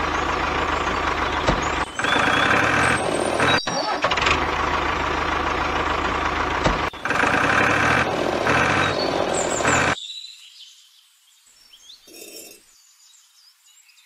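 Tractor engine running steadily with a low rumble, then cutting off suddenly about ten seconds in.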